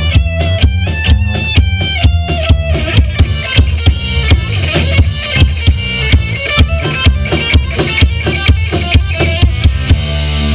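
Live rock band playing an instrumental passage: electric guitar lead notes over a drum kit keeping a steady beat, with bass guitar underneath.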